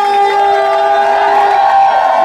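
A female vocal from the song's recording holds one long, steady note for about a second and a half, over a cheering crowd.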